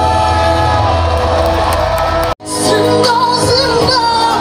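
Live stage music with group singing over a loud sound system. About two seconds in it cuts out abruptly for an instant, then singing and music carry on.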